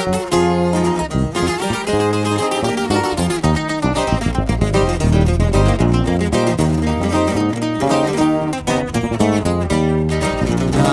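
Instrumental break of a Mexican corrido: acoustic guitars picking a melody over moving low bass notes, with no singing.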